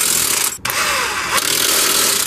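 Impact wrench running in two bursts, a brief pause about half a second in, as it drives home the bolts that clamp the strut's lower end to the rear steering knuckle.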